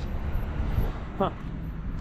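Low, uneven outdoor rumble, with a man's short 'huh' about a second in.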